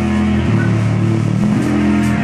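Live rock band holding loud, sustained guitar and bass chords that shift pitch about every half second, with no drum hits.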